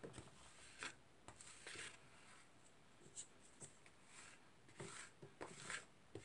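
Faint, intermittent scraping and tapping of spatulas on the plate of a rolled-ice-cream pan as the chocolate Oreo mixture is spread thin.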